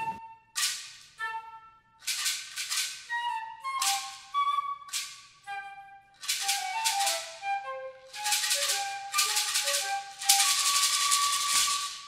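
Flute music with a shaker: short melodic flute phrases punctuated by shaker strokes, ending on a long held flute note over continuous shaking.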